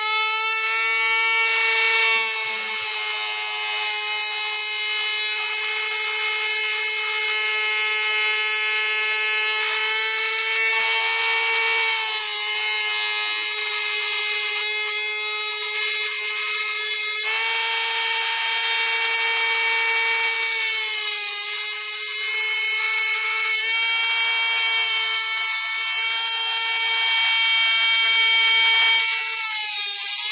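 Dremel rotary tool with a thin cut-off wheel cutting through a perforated sheet-metal utensil holder: a steady high motor whine with a hiss of the disc on the metal, its pitch shifting slightly a few times.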